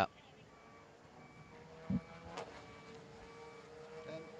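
Faint vehicle reversing alarm beeping at an even pace, from the machinery moving the barrier blocks. A steady low hum comes in a little past halfway.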